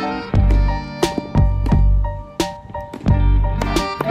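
Background music: held pitched chords over a bass beat, with sharp percussive hits.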